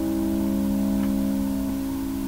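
The closing chord of a song held on a keyboard: several steady low notes sustained together and slowly fading out.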